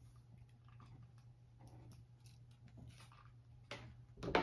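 Near silence with faint rustling and light clicks of small paper flags being handled at a table, over a low steady hum; a sharper, louder rustle or knock comes near the end.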